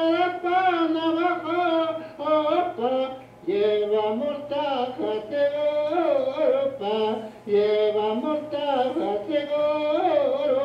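A 1950 field recording of one man singing an indita: held, wavering notes of vocable syllables mixed with Spanish and Navajo words, phrase after phrase with short breaks for breath, played back over loudspeakers with a faint steady hum beneath.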